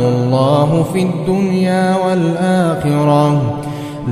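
A man reciting the Quran in melodic tajweed style, drawing out long held notes with ornamented pitch bends, easing off briefly near the end.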